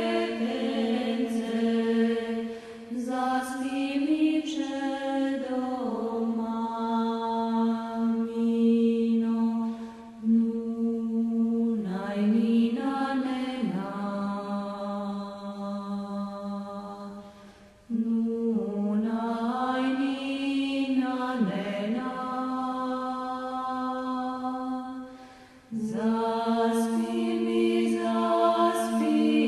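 Vocal music: a chant-like song sung in long held notes that slide between pitches, in phrases with short breaks between them.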